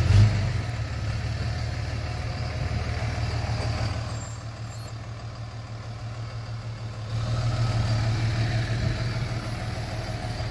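Ram 3500 tow truck's engine idling, a steady low hum. There is a short thump at the very start and brief louder handling noise about four seconds in. The hum is fainter for a couple of seconds after that, then returns.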